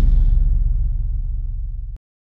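Deep rumbling tail of a cinematic whoosh-and-boom sound effect for an animated logo, the hiss on top dying away in the first half second while the low rumble fades slowly, then cut off abruptly at the end.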